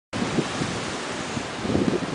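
Strong wind blowing over the microphone: a steady rushing noise with uneven, gusty low rumbles.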